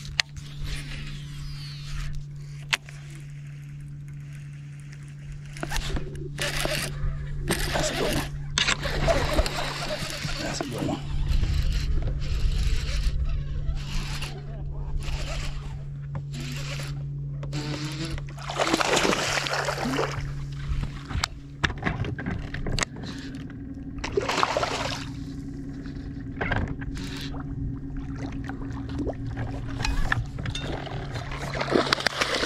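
Steady electric hum of a bow-mounted trolling motor holding the bass boat along the shore, with irregular gusts of wind noise on the microphone.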